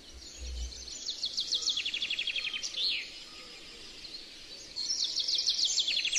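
Songbird singing a rapid trill of repeated notes that falls in pitch, twice: once about a second in and again near the end, over a steady outdoor background hiss.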